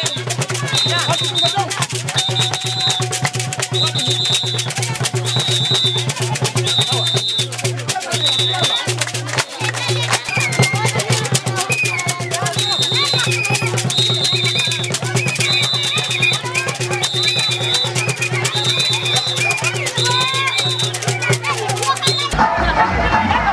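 Live percussion music with rattling shakers and hand clapping, with the voices of a crowd; a short high tone repeats about once a second through most of it.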